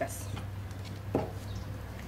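Low steady hum with soft handling noises from a crocheted garment and metal crochet hook being turned over, including one short knock a little over a second in.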